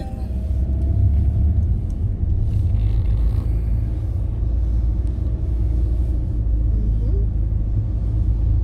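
Steady low rumble of a moving car, heard from inside the cabin: engine and road noise while driving.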